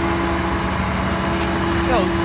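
An engine running steadily at idle, a constant low hum that does not change.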